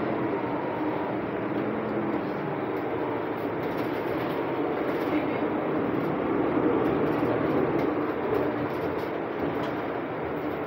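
A 2020 Nova Bus LFS diesel city bus under way, heard from inside the passenger cabin: a steady engine and drivetrain drone mixed with road noise, swelling slightly about two-thirds of the way through.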